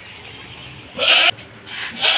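A goat bleating once, a short call about a second in.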